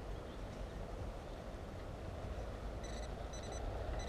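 A steady low background rumble, then about three seconds in two short high electronic beeps from a metal detector signalling a buried coin target being pinpointed in the dirt.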